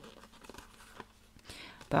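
A deck of cards being shuffled by hand: faint rustling of card on card with a few light clicks. A spoken word starts right at the end.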